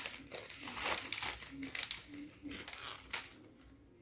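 Plastic packet of champagne biscuits (ladyfingers) crinkling as biscuits are taken out: a run of irregular crackles that dies away about three seconds in.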